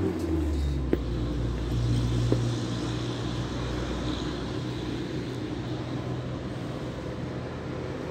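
Street traffic rumble, with a steady low engine hum that fades out about halfway through and a couple of light taps early on.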